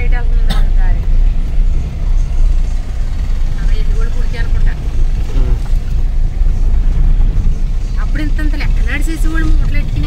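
Steady low rumble of a car driving on a rough dirt road, heard from inside the cabin. Voices talk over it near the start, midway and again near the end.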